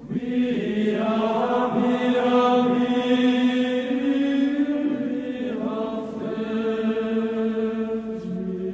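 Background music of chanted voices holding long, sustained notes, with a few changes of pitch.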